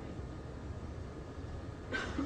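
Room tone: a steady low hum with faint hiss and no distinct events, ending with a small click.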